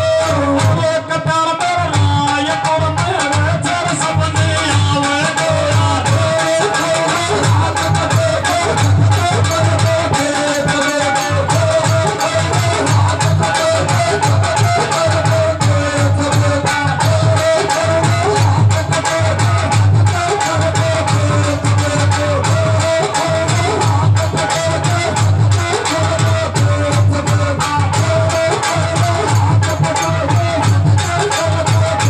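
Gurjar folk song performed live over microphones: male voices singing a wavering melody over a steady, repeating drum beat, loud and continuous.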